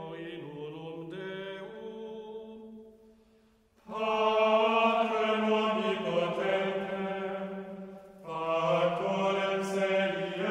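A choir chanting in long, held notes. A softer phrase breaks off about three seconds in, and after a brief pause a louder phrase enters at about four seconds, with a short dip near eight seconds.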